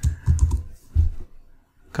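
Typing on a computer keyboard: a handful of separate keystrokes in the first second and a half, then a short pause.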